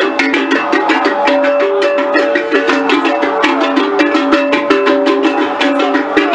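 Music: fast, dense drum and percussion strokes at a steady rhythm under a stepping melodic line.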